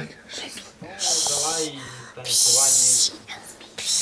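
A person's voice making wordless sounds, then two loud, long hissing breaths or 'shh' sounds, the second longer than the first.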